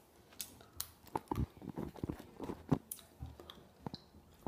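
A person chewing a BeanBoozled jelly bean: a run of soft, irregular mouth clicks and smacks.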